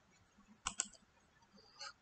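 Computer mouse clicks: two quick clicks about two-thirds of a second in, then a fainter click near the end.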